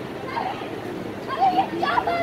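Young performers' voices shouting short, high-pitched calls, in two loud bursts about one and a half seconds in and at the end, over a steady murmur of outdoor crowd noise.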